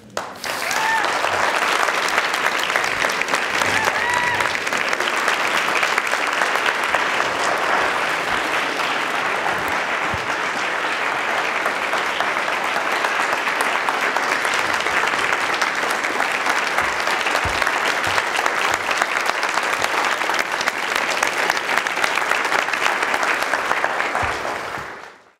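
Audience applauding steadily and loudly, with a couple of short rising calls from the crowd in the first few seconds.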